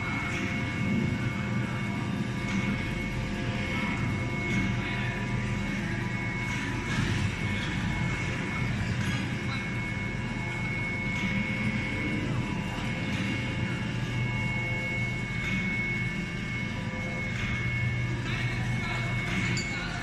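Steady hum of machinery in a large factory hall, with several steady tones over a low drone and voices in the background.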